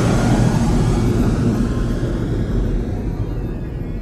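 Logo intro sound effect: a loud, wide rumbling noise with a deep low end, slowly fading away.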